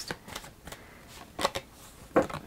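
A deck of oracle cards being shuffled and handled: soft flicks and rustles of card stock, with one sharper snap about one and a half seconds in.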